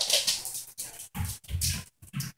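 A Great Dane making a quick series of short grunts and huffs, about five in two seconds.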